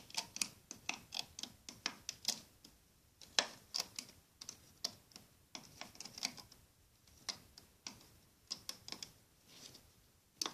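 Irregular light clicks, some in quick clusters, of a plastic hook and rubber bands knocking against a Rainbow Loom's plastic pegs as the loomed bands are lifted off one by one.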